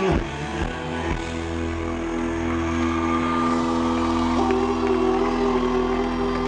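Live rock band music in an instrumental passage: electric guitar notes held and ringing over a steady low sustained tone, with no singing.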